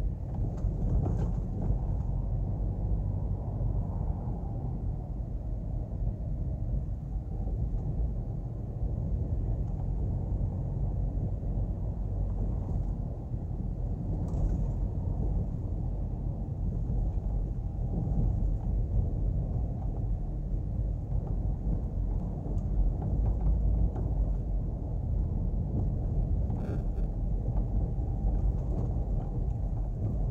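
Steady low rumble of road and engine noise from a car driving along a street, heard from inside the car.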